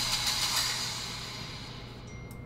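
Trailer audio under the Disney logo: a bright shimmering sparkle that starts loud and fades steadily away.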